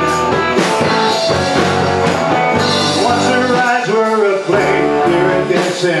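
Live rock band playing a song: guitars, drums and keyboard.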